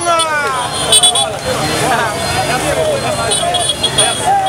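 A street crowd shouting and calling out over one another, voices loud and rising and falling in pitch, among parked and idling motorcycles. Short high-pitched tones sound about a second in and again near the end.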